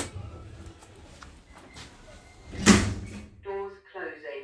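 Lift car doors shutting with a single loud thud a little under three seconds in, with a faint low hum from the lift before it and a click at the start.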